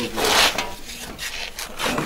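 Scraping and rustling noise in a few rough bursts, the loudest just after the start and another near the end, as people shift and rise from chairs.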